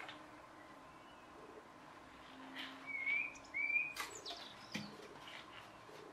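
Garden birds calling: two short whistled notes that rise and fall, a little under a second apart near the middle, among fainter chirps, with a sharp tick just after them.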